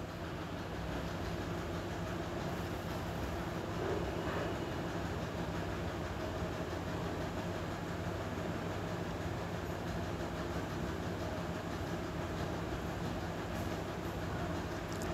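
Steady low rumbling background noise with a faint low hum, even in level throughout.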